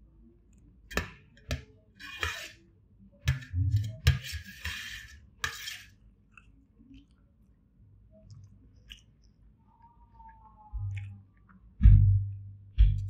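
Eating sounds: chewing, and fingers scraping and mixing rice on a stainless steel plate, with scattered clicks and a few short rustling bursts in the first half. Right at the end a spoon knocks against the plate.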